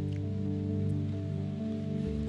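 Electronic keyboard playing held chords as background music, moving to a new chord about a second in and again near the end.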